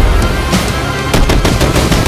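Film battle-scene soundtrack: loud, continuous gunfire with several sharp blasts, mixed over a music score.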